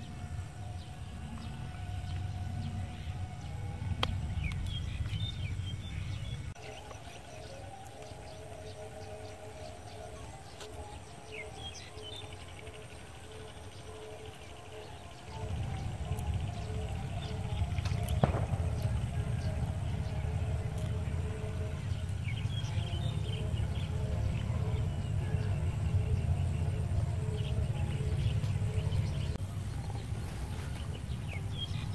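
Wind buffeting the microphone in an open field, easing for several seconds in the middle and then returning, with scattered bird chirps and a faint, pulsing pitched hum. A sharp knock comes a little past the middle.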